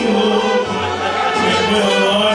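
Mariachi band performing a song live, with a man singing into a microphone over the band in long held notes.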